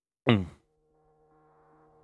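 A short buzzing sound that glides steeply down in pitch, followed by a faint, steady bed of low sustained tones.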